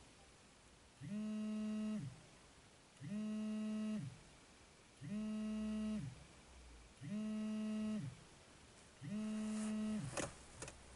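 A mobile phone on vibrate, buzzing in regular pulses: five buzzes of about a second each, two seconds apart, each winding up and down in pitch at its start and end.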